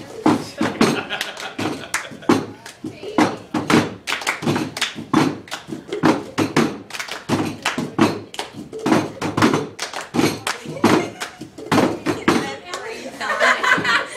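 A group of girls singing together while keeping a steady rhythm of hand claps and knocks on a table, about two to three beats a second.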